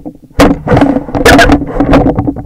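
An animal's fur and body rubbing and bumping against a trail camera right on its microphone: loud, irregular scraping with sharp knocks, starting after a brief lull.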